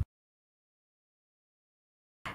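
Silence: the sound track is completely empty, with no sound at all.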